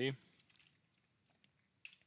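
A few faint computer keyboard keystrokes, with one sharper key press near the end.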